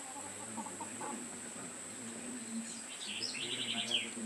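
Outdoor rural ambience of birds calling, with a quick, rapidly repeated chirping trill about three seconds in that ends on a falling note, over a steady high-pitched insect drone.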